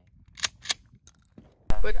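Two sharp mechanical clicks about a quarter-second apart as a gun is handled at the shooting table. Near the end, loud low wind rumble on the microphone comes in abruptly.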